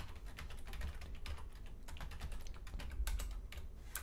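Typing on a computer keyboard: a steady run of key clicks as a terminal command is typed, with a few louder strokes near the end.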